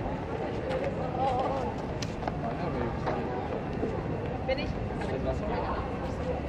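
Busy pedestrian street ambience: passers-by talking in snatches over a steady city background hum, with scattered light clicks.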